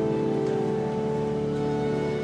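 Pipe organ holding sustained chords, with a few notes changing, in a cathedral's reverberant nave.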